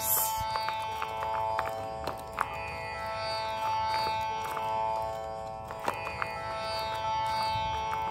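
Instrumental background music: plucked string notes over a steady sustained drone, in an Indian classical style.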